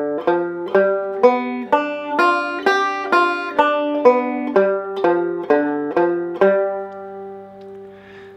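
Five-string resonator banjo playing a G7 arpeggio (G, B, D, F) in single picked notes starting from the open D string, at an even pace of about two notes a second. The last note, about three quarters of the way in, is left to ring and fade.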